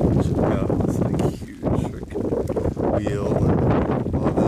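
Wind buffeting the microphone over steady rain, with a brief lull about a second and a half in.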